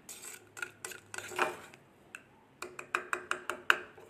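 Plastic spoon stirring a runny paste in a plastic bowl, clicking and tapping against the bowl's sides. Scattered taps at first, then after a short pause a quick run of taps near the end.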